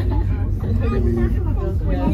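People chatting over a steady low rumble inside a moving cable car cabin.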